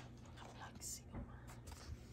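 A few faint clicks and a brief rustle of thin plastic takeaway-container lids being handled and set down on a table.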